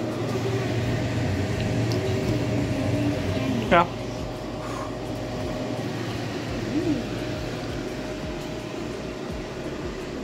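A steady low mechanical hum, like a running fan or appliance motor, with a faint steady whine above it.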